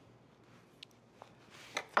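Mostly quiet room tone with two faint light ticks about a second in, from a table knife spreading jam on a crepe.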